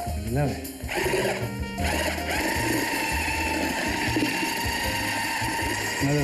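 Electric mixer switching on about a second in and running steadily with a whine, beating cottage cheese with eggs and sugar.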